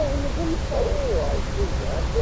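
Muffled, indistinct voices from an old radio-drama broadcast recording, low under a steady hiss and rumble of surface noise.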